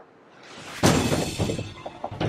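News-show transition sting: a short rising swell that breaks, just under a second in, into a sudden crash-like hit with a noisy tail that dies away.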